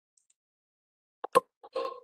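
Two sharp clicks about a second in, the second much louder, followed near the end by a brief sound with a steady pitch, heard through a video-call line that is otherwise silent.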